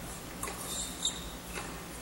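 Faint tennis rally on an indoor hard court: a few soft ball strikes and bounces, and a rubber-soled shoe squeaking on the court, sharpest about a second in.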